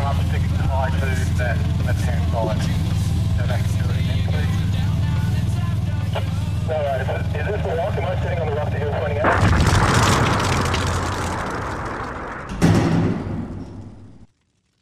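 Nissan GQ Patrol's engine running at low revs as it crawls over rocks, a steady low drone. About nine seconds in a rushing whoosh swells and fades, followed by a boom shortly before the end: a title-card transition effect.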